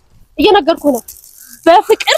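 A woman speaking in two short bursts, with a faint high rustle between them about a second in.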